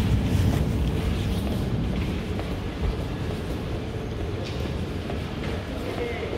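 Steady low rumble of a subway station's background noise, easing off a little over the few seconds, with a few faint taps.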